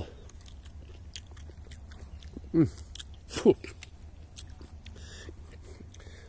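Chewing a bite of a ripening service tree fruit (Sorbus domestica), already soft: small, quiet wet clicks throughout, with two short falling "mm" hums in the middle.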